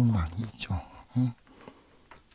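Speech only: a voice speaking low in two short stretches, at the start and again about a second in.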